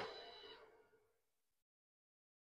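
A single ringing note, struck sharply and fading out over about a second and a half.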